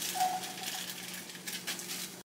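A plastic bag crinkling and rustling as it is handled, in short scattered crackles, over a steady low hum.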